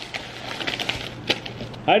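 A plastic padded mailer crinkling and crackling as it is opened and a card is pulled out: a quick irregular run of small clicks and rustles.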